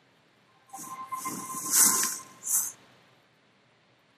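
Intro logo sound effect: an airy whoosh that starts about a second in, builds to a peak in the middle and is followed by a second, shorter whoosh, with a thin held tone underneath.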